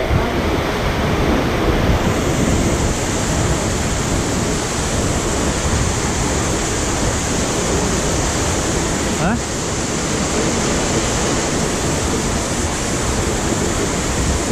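Steady rushing of white water in a boulder-filled river gorge, with wind buffeting the microphone.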